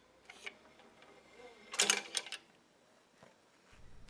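Light metallic clicks and a brief rattle from the clutch cable and its fittings being handled at a BCS two-wheel tractor's clutch lever, with a few small clicks at first and a louder cluster about two seconds in.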